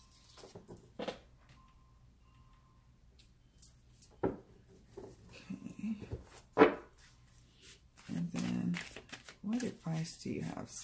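A tarot deck being handled on a cloth-covered table, with cards set down and gathered up. Two sharp clicks come about four and six and a half seconds in, the second the loudest.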